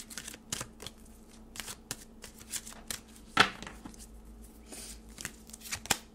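A deck of oracle cards being shuffled by hand: a run of short, crisp card flicks and snaps, the loudest a little past halfway.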